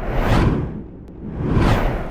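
Whoosh sound effect of a news-bulletin logo transition: two swooshes, the first sweeping down in pitch and the second sweeping back up, with a quieter moment between them.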